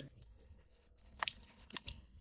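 Faint handling noise of the plastic fuel-door lock actuator being held and moved by hand, with three light clicks in the second half.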